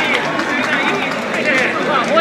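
Racetrack crowd: many spectators' voices talking and calling out close by over a steady background din.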